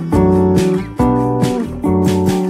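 Background music led by strummed acoustic guitar, a new chord struck about every second.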